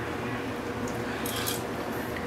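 Light clinks of an eating utensil against a pot or bowl about one and a half seconds in, over a steady low background noise, as the soup is tasted.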